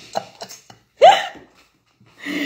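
A woman laughing: a few faint breathy sounds, then one loud, short, high-pitched yelp about a second in.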